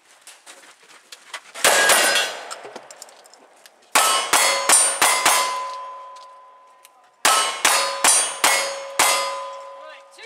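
Single-action revolvers firing two quick strings of five shots, each string spread over a second or two, with steel targets ringing after the hits; a single loud shot comes about two seconds before the first string.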